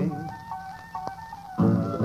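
Music from a 1938 78 rpm recording: after the sung line ends, a few held instrumental notes sound quietly, with a single click about a second in. The full band comes back in loudly near the end.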